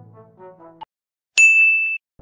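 Brass-heavy background music stops, and about a second and a half in a loud, bright single-pitched ding sounds, held steady for about half a second before cutting off: an editing transition chime marking a new section.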